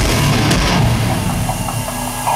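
Loud live rock music: the instrumental intro of a song, with heavy guitars and drums.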